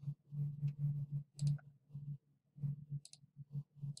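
A couple of computer mouse clicks over a low, pulsing hum.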